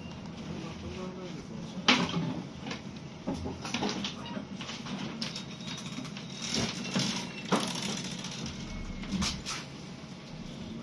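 Cabin noise on the upper deck of a moving ADL Enviro 400 MMC double-decker bus: a steady low drone from the engine and road, with knocks and rattles from the body and fittings, the loudest about two seconds in and several more in the middle and near the end.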